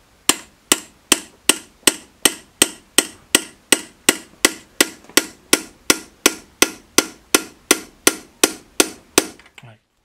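Hammer tapping a small steel chisel into a copper plate, about 25 even strikes at roughly three a second, each raising one tooth of a handmade Japanese grater (oroshigane). The taps are sharp and ringing, a steady kon-kon-kon, stopping a little before the end.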